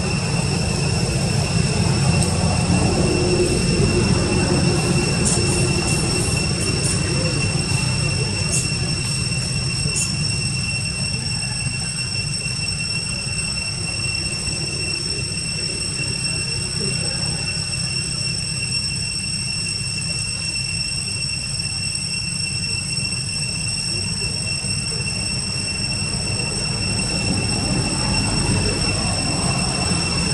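A steady high-pitched drone holds one pitch, with its overtones, throughout. Under it runs a constant low rumble, and a few faint ticks come in the first third.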